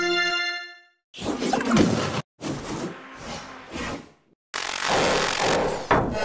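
Sped-up logo jingles: a short keyboard tune dies away in the first second, then three loud, noisy sound-effect bursts follow with brief silences between them.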